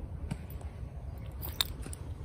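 A hoe chopping into wet soil at an irrigation channel: a few short crunching strokes, the sharpest about one and a half seconds in, over a low steady rumble.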